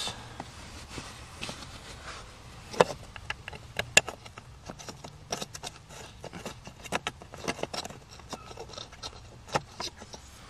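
Irregular clicks, taps and light scrapes of hands and a Phillips screwdriver fitting the screws back into a car's blower motor resistor under the dashboard, with two sharper knocks about three and four seconds in.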